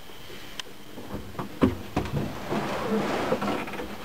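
Several light knocks and clicks, one sharper knock about a second and a half in, then a stretch of rustling, from someone moving about in a bulldozer cab with no engine running.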